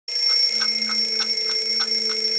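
Mechanical alarm clock ticking about three times a second, under a steady high ringing tone.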